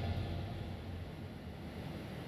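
The band's last chord dying away after the song ends, fading over the first second or so into a low, steady hum and faint room tone.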